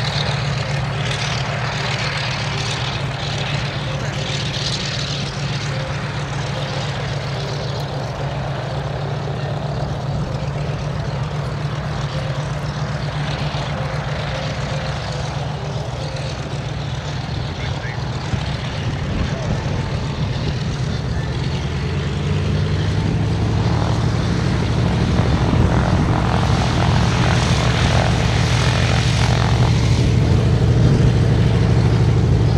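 Douglas DC-3's two radial piston engines running at taxi power with the propellers turning: a steady low drone that grows louder over the last third as the aircraft taxis closer.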